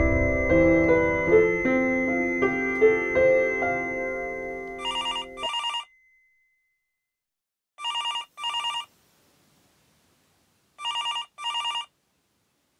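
Soft piano music that stops about halfway through, overlapped near its end by a telephone ringing in the double-ring pattern: three pairs of short rings about three seconds apart, with silence between them.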